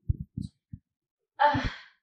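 A woman's breathy, sigh-like "uh" about one and a half seconds in. Before it come three or four short, muffled low sounds.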